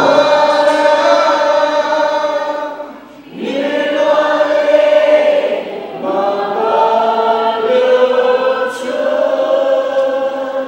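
Lead and backing voices singing a Nepali Christian worship song live, in three long held phrases with short breaths between, over light accompaniment without deep bass.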